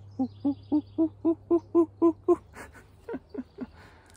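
A man imitating an owl's hooting with his voice: a quick, even run of about nine short hoots, roughly four a second, then a few fainter, shorter ones.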